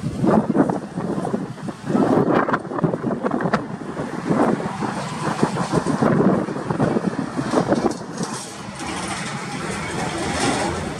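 Convair 580's Allison turboprop engines on final approach and touchdown, their rumble rising and falling in gusts as wind buffets the microphone. From about eight seconds in, a steadier, higher hiss joins as the aircraft rolls out along the runway.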